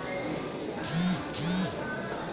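Store ambience with background chatter and music. A nearby voice makes two short sounds about a second in, each rising then falling in pitch.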